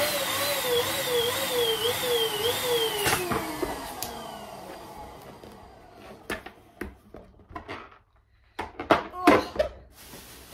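A small electric balloon pump runs with a wavering whine while inflating a balloon, then is switched off and spins down, its pitch falling over about two seconds. After that come light clicks and rubbing as the balloon is tied. A few sharp rubber squeaks about nine seconds in come as it is pushed into a plastic bag.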